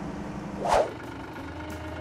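An engine running steadily with a low hum, with a short burst of noise about three-quarters of a second in.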